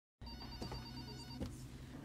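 A faint electronic telephone ringing, a trilling tone lasting about a second, over quiet office room tone.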